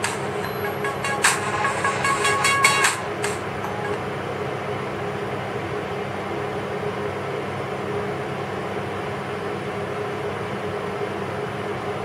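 A short tinny electronic game jingle with clicks from a phone's speaker, stopping about three seconds in. After it, a steady background machine hum with a low drone runs on.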